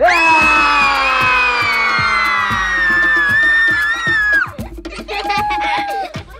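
A man and a group of children shouting a long victory yell together, held for about four and a half seconds with the pitch sliding slowly down, then cutting off suddenly. Background music with a steady beat runs underneath.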